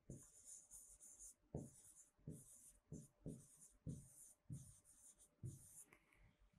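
Marker pen writing on a whiteboard: a faint run of about ten short, scratchy strokes as a line of handwriting is put down.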